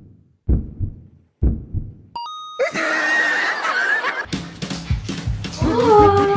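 Edited sound-effect soundtrack: two low booming hits about a second apart, a quick rising run of chime tones, a noisy laugh-like effect, then upbeat background music with a steady beat from about four seconds in.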